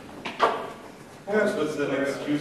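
Saxophone played in free improvisation: a sharp knock about half a second in, then short, voice-like bending tones near the end.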